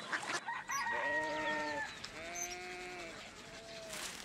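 A rooster crowing: one drawn-out call in three parts, starting about a second in, the middle part the longest and gently arched.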